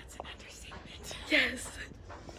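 A young woman's short breathy vocal sound, falling in pitch, about a second and a half in, with a few faint clicks before it.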